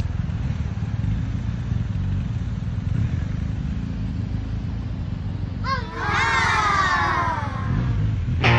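BMW R 1250 GS boxer-twin engine running steadily at low revs as the bike is ridden slowly. About six seconds in, a louder, drawn-out wavering sound joins it and slides down in pitch.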